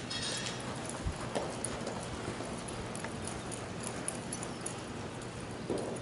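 Quarter horse's hooves thudding on soft arena dirt as it lopes, with a few louder thumps about a second in and near the end.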